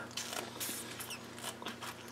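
Faint, irregular crisp clicks of a snap pea pod being chewed.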